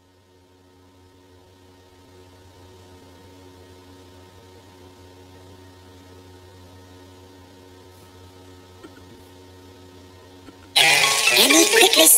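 Faint, steady background music drone of sustained low chords, slowly swelling. A loud voice cuts in near the end.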